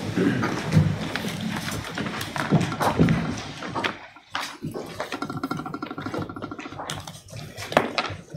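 Councillors settling into padded chairs at a table, with scattered knocks, chair movement and paper handling. About five seconds in, a buzzing hum sounds for about two seconds and then stops.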